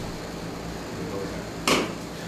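A sparring partner going down to the floor in a takedown, with one short sharp noise near the end over a steady low room hum.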